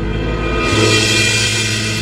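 Instrumental ballad backing music: held chords over a low bass note, with a cymbal roll swelling in about a quarter of the way through.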